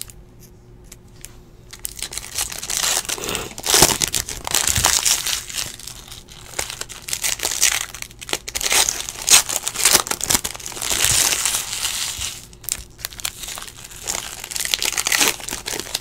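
A trading card pack's foil wrapper being crinkled and torn open by hand, a dense crackling rustle with sharp ticks that starts about two seconds in and comes in waves.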